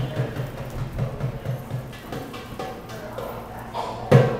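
Dumbek (goblet drum) played by hand in a quick, steady rhythm, softer through the middle and growing louder near the end.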